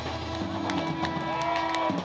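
A live rock band's last note ringing out at the end of a song: one held tone that stops just before the end, with scattered claps from the audience starting up.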